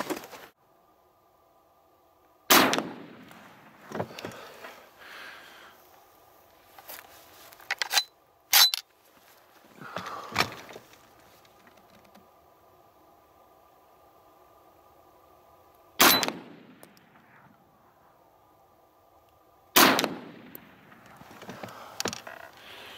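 Inland M1 carbine (.30 Carbine) fired one shot at a time, with sharp reports several seconds apart. The rifle is not cycling reliably with its 30-round magazine, and the firing stops near the end with another malfunction.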